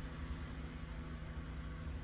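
Quiet steady hiss with a faint low hum: room tone, with no distinct sounds.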